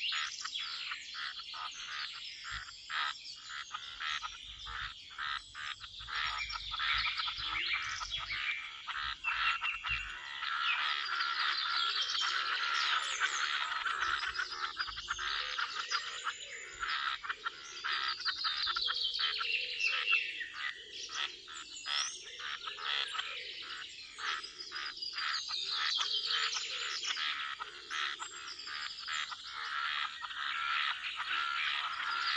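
Pond ambience: a dense chorus of frogs croaking, with birds singing over it. A few of the bird songs fall in pitch over a couple of seconds, about two-thirds of the way through and again near the end.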